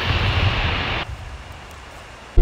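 A steady hiss of background room noise with a low rumble, which drops abruptly to a much quieter hush about a second in.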